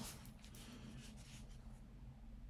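Faint handling sounds as a quilted nappa leather card case and bag are lifted and shifted in the hands: a few soft scratchy rubs in the first second, then near silence over a low steady hum.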